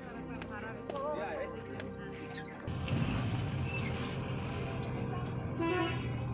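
Music with a voice over it; a little under halfway through, a vehicle's low engine rumble comes in and becomes the loudest sound, heard from inside the vehicle.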